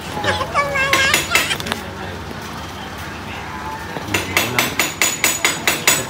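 A quick run of sharp clacks, about five a second, from hard objects knocking together, starting about four seconds in. It is preceded by a brief high-pitched voice in the first two seconds.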